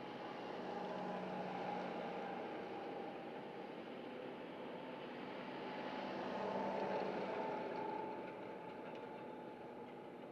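Tractor engine running steadily as it tows an arena drag over the sand footing. It grows louder and fades twice.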